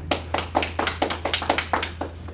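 A few people in the audience clapping, about five claps a second as separate, distinct claps, stopping near the end.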